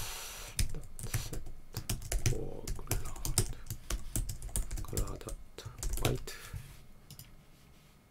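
Computer keyboard typing: a run of quick, irregular keystrokes that stops about seven seconds in.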